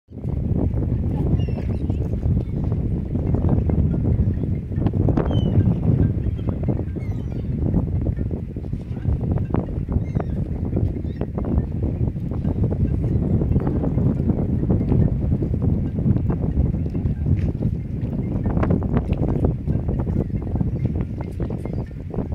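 Wind buffeting the microphone: a steady low rumble that swells and fades, with scattered small knocks and clicks.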